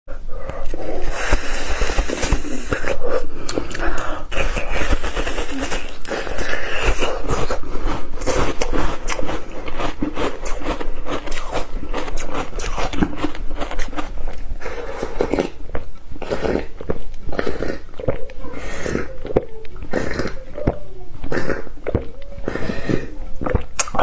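Biting and chewing a soft blue ice cream bar close to the microphone, with a dense run of small mouth clicks.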